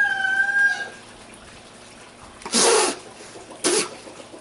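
A man spitting out a mouthful of prickly pear seeds: two forceful spits, the first about two and a half seconds in, the second about a second later. At the start a chicken gives one drawn-out call.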